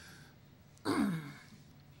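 A man's short, breathy, sigh-like laugh about a second in, his voice falling in pitch.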